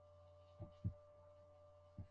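Near silence: a faint steady electrical hum from the recording setup, with two soft low thuds a little over half a second apart near the middle.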